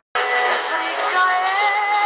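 Music with a singer coming from a portable radio's speaker, a medium-wave AM broadcast received on 882 kHz; it starts after a brief dropout at the very start, and the singing voice comes in about a second later.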